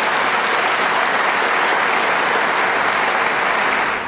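A large audience applauding, a dense, steady sound of many hands clapping together.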